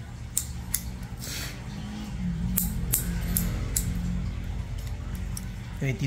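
Steel nail clipper snipping toenails: a series of sharp clicks, roughly one every half second or so, with gaps between cuts.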